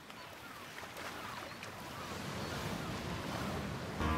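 Sea surf, a steady wash of noise fading in and growing gradually louder.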